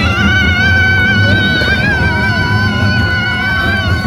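A roller-coaster rider's long, high-pitched scream, held on one wavering note for about four seconds, over a low rumble from the moving train.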